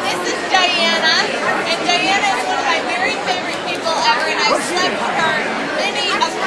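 Several people talking over one another at a table, women's voices prominent, in the steady chatter of a busy bar dining room.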